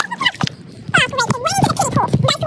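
Voices sped up into a high-pitched, garbled chatter, the pitch darting up and down too fast for words to be made out.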